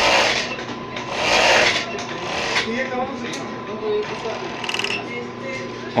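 Hercules HE 360-5 five-thread industrial overlock machine sewing a test seam in chiffon, in two short runs of whirring stitching over the steady hum of its motor. The seam is a check of the rear chain-stitch tension, which has just been tightened.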